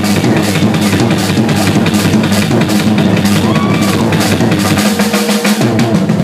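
Live band playing loudly: a drum kit driving a fast beat of rapid, evenly spaced bass-drum and snare hits, over an electric bass guitar.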